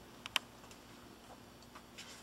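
A few faint clicks and taps from a hardcover picture book being handled, the sharpest about a third of a second in, over quiet room tone.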